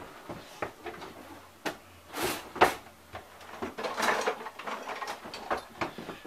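Short knocks, clicks and rustling of kitchen items being handled at the counter, the loudest a pair of knocks a little over two seconds in.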